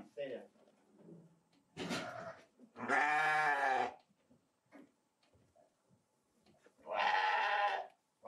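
Ewes bleating at feeding time, calling for grain: a short, rough call about two seconds in, then two long bleats, at about three and about seven seconds in.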